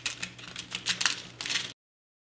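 Irregular light clicks and rattles of small brass threaded inserts being picked through in a plastic organizer case, cutting off abruptly near the end.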